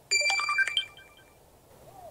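Smartphone alert tone: a short jingle of quick, rising electronic notes lasting under a second.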